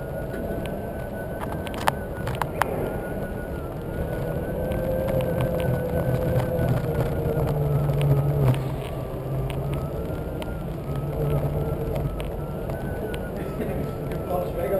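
Solowheel electric unicycle riding over pavement: a thin motor whine that drifts slowly up and down in pitch over a steady low rumble from the wheel, with a couple of sharp knocks about two seconds in.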